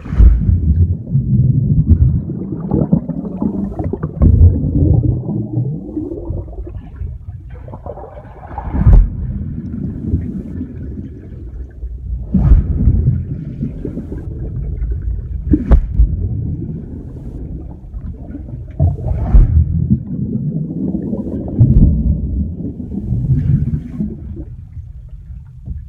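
Water churning and bubbles rising around a swimmer, heard through a submerged phone: a muffled rumbling and gurgling that swells and fades in waves, with a few sharp knocks.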